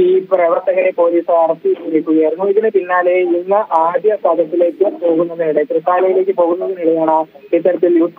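Only speech: a man reporting without pause over a phone line, which sounds narrow and thin.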